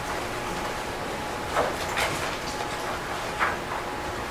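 Quiet meeting-room background with a few brief, soft rustling noises from people moving about, about one and a half, two and three and a half seconds in.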